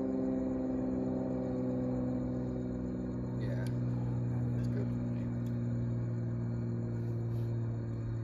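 Steady low hum of a running machine, made of several held tones, with a few faint clicks about halfway through.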